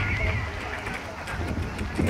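Horse trotting on a gravel track while pulling a two-wheeled cart, its hoofbeats clip-clopping. A brief high, wavering call sounds at the start.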